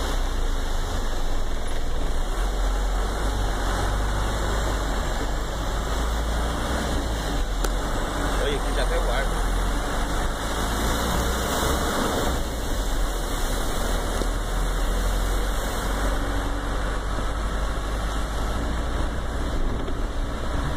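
Heavy vehicle's engine running steadily, heard from inside the cab, with a continuous hiss of water and rain as it drives along a flooded street.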